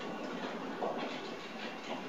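Faint steady room noise and hiss with a few soft, small sounds; no speech.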